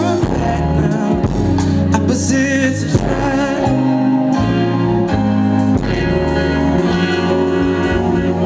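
Live R&B band music with drums and sustained chords, and wordless sung vocal runs over it.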